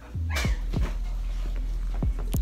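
A person's short cat-like vocal imitation, a playful meow or growl, about half a second in. It is followed by a steady low rumble and a few knocks of handling noise.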